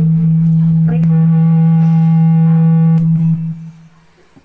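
Karaoke backing track holding the song's closing chord: a steady low tone with higher notes over it, which fades and stops about three and a half seconds in.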